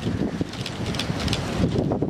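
Wind rumbling on the microphone outdoors, with a few faint clicks in it.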